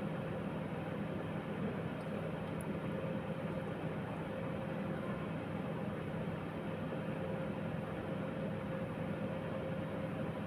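Steady fan-like machine noise with a low hum and a faint steady tone, with a couple of faint clicks about two seconds in.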